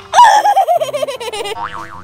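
A cartoon boing sound effect: a wobbling tone that falls in pitch over about a second and a half.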